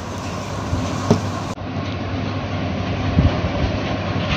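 Steady low background rumble with one short tap about a second in; the sound changes abruptly partway through, as at a splice.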